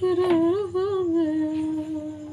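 A woman humming a slow tune. The pitch wavers up and down and then settles onto one long, lower held note.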